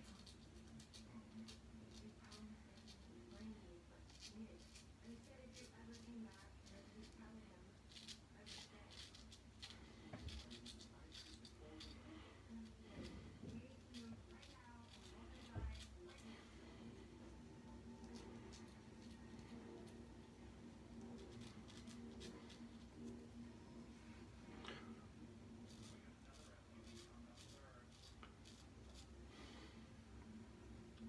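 Faint scraping of a vintage Gillette single-ring safety razor cutting lathered stubble on the upper lip, heard as clusters of short crackling clicks with each short stroke.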